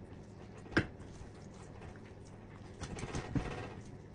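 Kitchen knife cutting up a raw whole chicken on a plastic cutting board. There is a single sharp click a little under a second in, then a short run of knocks and scrapes around three seconds as the blade works through the bird.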